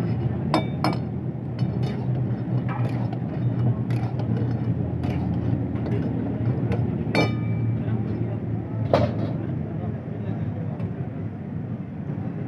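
Metal spatula and tongs clinking and scraping against steel woks as pieces of chicken are stirred and turned, in sharp strikes about once a second, a couple of them ringing briefly. A steady low rumble runs underneath.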